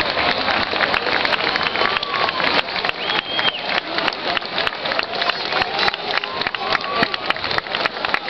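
Crowd of spectators applauding steadily, a dense patter of many hand claps, with a few faint voices mixed in.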